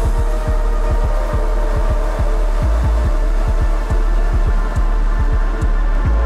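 DJ-mixed UK garage and breaks dance music: heavy sub-bass under a busy, uneven kick-drum pattern, with held synth chords on top.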